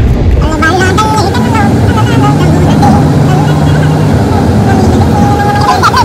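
A woman's voice talking over the steady low rumble of a moving car, heard from inside the cabin.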